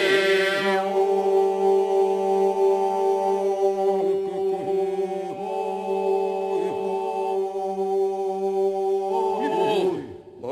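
Albanian men's folk group singing unaccompanied iso-polyphony: the chorus holds a steady drone (the iso) while voices above it slide and ornament the melody. The held chord breaks off just before the end.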